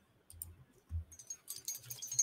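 Faint clicking and light rattling from small objects being handled, sparse at first and growing busier and denser about a second in, with a few thin, high metallic rings among the clicks.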